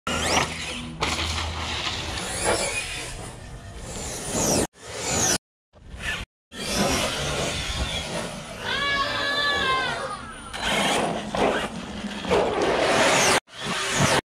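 Brushless electric RC trucks driving hard and tumbling, heard in a string of short clips. The motor whine rises and falls over a noisy wash of tyres and dirt. Hard cuts bring brief silences between the clips.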